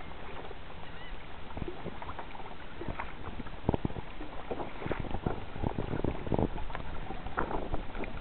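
Water slapping and splashing against a plastic sea kayak's hull as the kayak is towed through a light chop by a hooked fish. The slaps come irregularly and grow more frequent in the second half.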